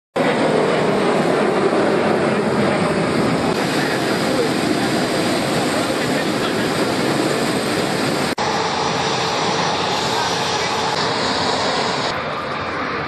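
Steady, loud jet aircraft engine noise, with voices mixed in. The sound drops out briefly a little past eight seconds in.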